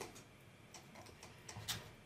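A computer mouse clicks once, faintly, about three-quarters of the way through, over quiet room tone.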